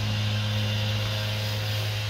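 A steady low hum, with a fainter higher tone above it, holding unchanged throughout.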